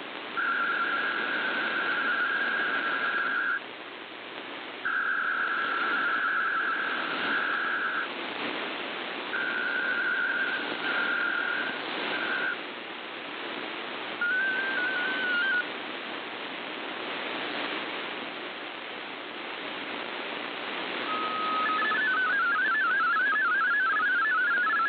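Shortwave radio reception: static hiss with fading, over which a narrow band of digital data tones near 1.5 kHz comes and goes in three long blocks. Near the end an RSID mode-identification burst is followed by the rapidly stepping warble of an MFSK32 digital text transmission.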